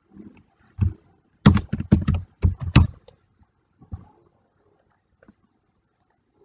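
Computer keyboard and mouse clicks: a single click about a second in, then a quick run of about eight keystrokes, and a few scattered clicks later.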